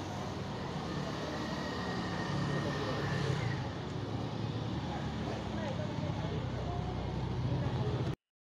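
Busy street at night: a continuous din of people talking in a crowd, with cars and motorbikes passing close by.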